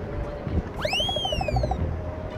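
A cartoon-style comedy sound effect: a whistling tone that swoops sharply up and then glides slowly down over about a second, with a quick string of small pips under it. Low wind rumble runs underneath.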